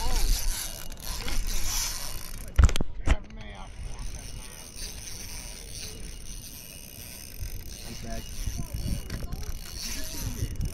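Fishing reel being worked, its mechanism clicking, with two sharp knocks about two and a half and three seconds in.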